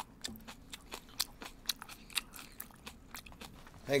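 Close-miked chewing: a person eating a mouthful of food, heard as a run of irregular small mouth clicks.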